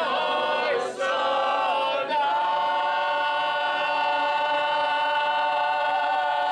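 A group of men and women singing a traditional folk song together, unaccompanied. After two short phrases they hold one long note from about two seconds in.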